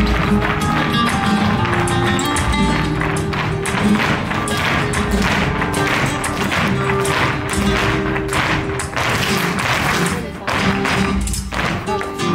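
Flamenco music with guitar accompanying a group dance, with sharp percussive taps through most of it from the dancers' footwork.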